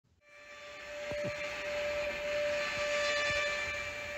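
Steady droning hum with a held tone, fading in from silence over the first second or so, with a few brief falling swoops: an ambient intro sound bed.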